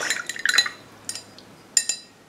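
A paintbrush clinking lightly against a hard dish: a few soft clinks at first, then one sharper clink with a brief ring near the end.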